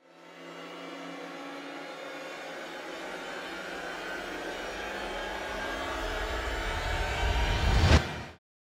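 Cinematic title-sequence sound design: a whooshing riser that swells steadily over a deepening low rumble. It peaks in a low hit at the very end, then cuts off abruptly.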